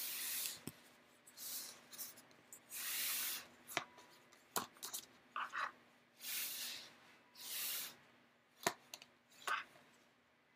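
Tarot cards being shuffled and handled in the hands: a handful of short rustling bursts, with sharp clicks of cards in between.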